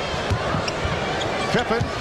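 A basketball dribbled on a hardwood court, about three to four bounces a second, over a steady haze of arena crowd noise.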